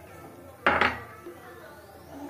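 A metal spoon clinks sharply against a bowl or container about two-thirds of a second in, with a brief ring, as it tips carom seeds into gram flour.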